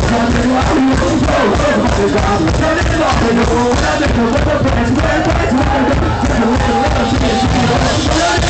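Punk rock band playing live, loud and continuous, with a singer over the band.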